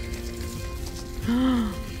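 Soft background music with sustained held notes. A little past halfway, one short vocal sound from a woman rises and falls in pitch over it, like an admiring "ooh".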